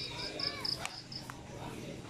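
An insect chirping in a quick series of short, high pulses, about five a second, that stops a little over a second in. A couple of faint clicks are also heard.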